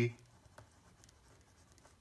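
Pen writing on paper: faint scratching of the pen tip across the sheet.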